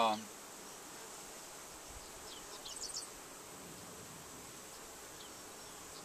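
Honey bees buzzing around an open hive as a brood frame covered in bees is held up: a faint, steady hum, with a few short high chirps about two and a half to three seconds in.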